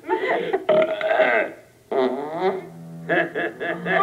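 A run of loud, drawn-out comic belches, each with a bending pitch, the last a long low steady one near the end, heard through a television's speaker.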